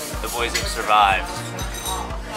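Background music playing in a busy café, with people's voices; one voice stands out briefly about halfway through.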